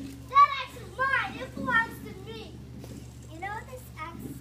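A child's voice yelling a short line at high pitch, followed by a little more child speech.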